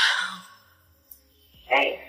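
A person's breathy sigh, loudest at the start and fading within about half a second, followed near the end by a short voiced sound.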